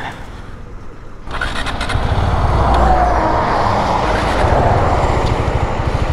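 Riding noise on a moving motorcycle: engine rumble and a rushing wind-and-road noise on the mic, which jumps up sharply about a second in and stays loud.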